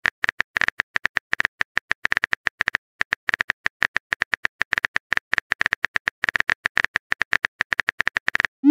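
Typing sound effect: a rapid, uneven run of sharp key clicks, several a second, with a short pause about three seconds in.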